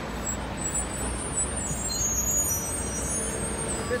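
Vehicle engine running steadily: an even low rumble with no distinct events.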